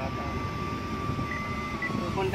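A car's reverse parking sensor sounds one steady, unbroken beep for most of two seconds and then cuts off, over the low rumble of the car's cabin. A continuous tone rather than spaced beeps is the sensor's sign that an obstacle is very close behind.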